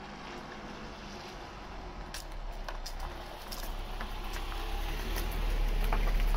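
A car engine running close by, its low rumble growing steadily louder as the car draws nearer, with a few light clicks in the first half.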